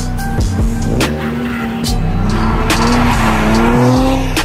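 Drift car engine revving up in pitch as the car slides, with tyre noise building through the second half, heard over background music with a steady beat.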